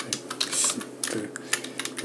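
Typing on a computer keyboard: an irregular run of quick keystroke clicks.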